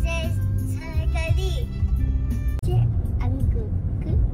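Music with a high singing voice over instruments, broken off by a sudden short drop about two and a half seconds in, with a low rumble of traffic underneath.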